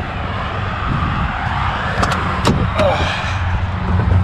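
Steady low rumble of an idling truck engine, with a few sharp clicks and knocks about two seconds in as the cab door is opened and climbed into.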